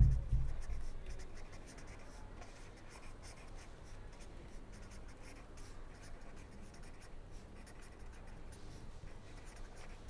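Pen writing on paper: a long run of faint, irregular scratching strokes as words are written out. A low thump right at the start is the loudest sound.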